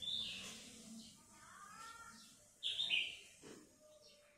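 Faint bird chirps: a short call at the start, a brief warbling call about a second and a half in, and two more calls near three seconds.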